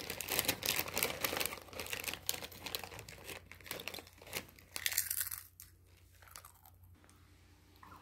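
A child crunching potato chips, mixed with the crackling crinkle of the chip bag, through roughly the first five seconds; after that it is nearly quiet.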